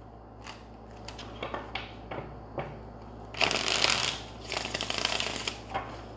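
A deck of tarot cards shuffled by hand: a few light taps and flicks at first, then two runs of rapid card slapping, each about a second long, past the halfway point.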